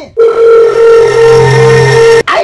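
A loud, steady electronic beep tone held for about two seconds, with a lower hum joining partway through, then cutting off suddenly.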